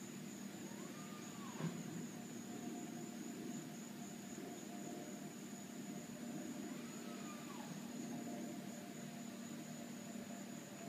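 Faint outdoor background sound: a steady high-pitched whine over a low hum. Twice a short tone rises and falls, and there is a single click about one and a half seconds in.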